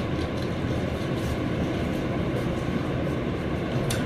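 Steady rushing background noise with a small click near the end.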